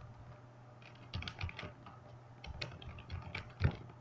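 Computer keyboard being typed on: short key clicks in quick irregular runs, with one louder keystroke near the end.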